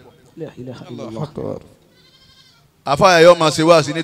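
A man's voice chanting religious verses over a microphone, its pitch wavering in quick vibrato. A quieter stretch of voice comes first, then the chanting returns loudly about three seconds in.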